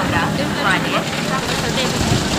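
People talking over a steady low rumble.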